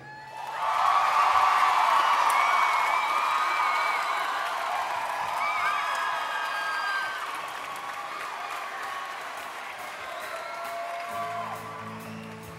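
Audience applauding and cheering with whistles, swelling within the first second and then slowly dying down; music starts up again near the end.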